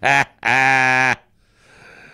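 A man's voice: a short laugh-like burst, then a single drawn-out syllable held at a steady pitch for under a second. A faint high hum follows.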